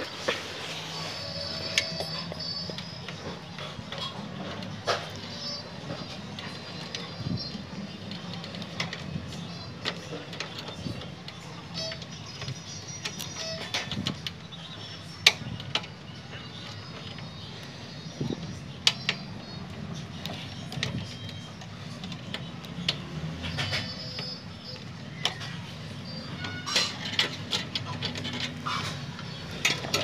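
Sharp clicks and light knocks, scattered irregularly, as cables and connectors are handled with fingers and tweezers inside a metal desktop PC case, over a low steady hum.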